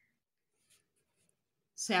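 Faint, brief scratching of a pen on paper in near silence, then a voice starts speaking near the end.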